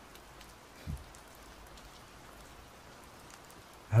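Steady rain ambience. A brief low sound comes about a second in, and a man's voice starts at the very end.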